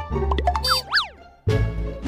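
Edited-in comic background music with a sound effect sliding quickly up and down in pitch a little under a second in. The sound cuts out briefly just past the middle, then the music starts again.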